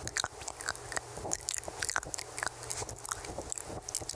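Rapid, irregular wet mouth clicks and lip smacks right up against a microphone, many per second.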